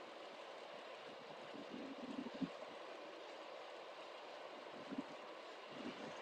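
Faint steady rushing background noise, with a brief faint sound about two and a half seconds in and another near five seconds.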